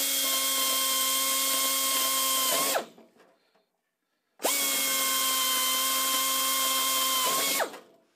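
High-speed pneumatic air drill run twice, drilling two rivet holes through an aluminium aircraft skin panel. Each run lasts about three seconds, a steady whine over rushing air hiss, and winds down with a falling pitch when the trigger is let go.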